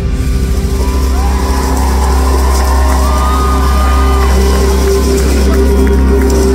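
Live pop music ending with the beat dropping out and a long chord held over a steady heavy bass, while voices from the stage and crowd whoop and cheer above it.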